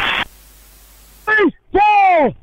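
A man's voice through a referee's body microphone: the end of a spoken word, about a second of steady radio hiss, then two short shouted calls whose pitch rises and falls.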